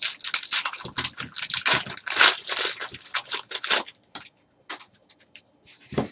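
A foil trading-card pack being torn open and crinkled by hand: dense crackling for about four seconds, then only a few faint rustles and a soft thump near the end.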